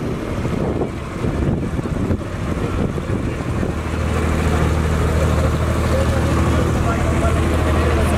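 A passenger ferry boat's engine running under people's chatter; about halfway through the engine note steadies and grows louder as a low, even hum, as the boat gets under way.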